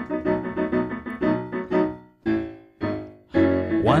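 Short instrumental break in a filk song: piano chords struck in a steady repeated rhythm, several a second. A voice comes in singing at the very end.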